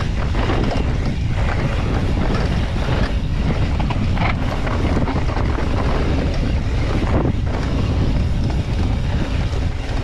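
Wind rushing over the microphone and mountain bike tyres rolling fast over a dry dirt trail, steady and loud throughout, with a few short knocks as the bike hits bumps.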